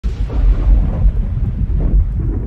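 Loud, deep rolling thunder rumble, a storm sound effect that keeps up without a break.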